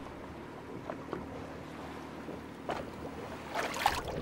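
Quiet ambience aboard a small boat at sea: a faint wash of wind and water with a steady low hum, and a few light knocks.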